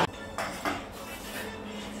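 A few light clinks of metal utensils against metal mixing bowls and glassware, scattered short taps over a quiet background.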